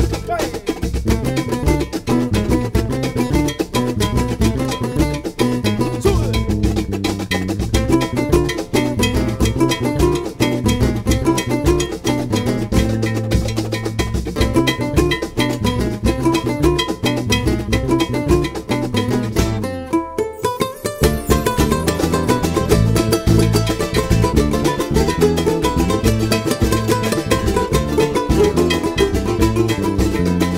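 A live band playing an instrumental passage of Latin American folk music: strummed small guitars over bass guitar and a steady beat. The music drops out briefly about two-thirds of the way through, then carries on.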